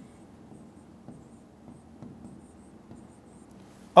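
Stylus pen writing on an interactive touchscreen display, making faint, irregular taps and scratches as a line of words is handwritten.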